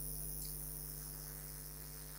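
Faint steady electrical mains hum with a light hiss from the microphone and amplifier chain, with no other sound.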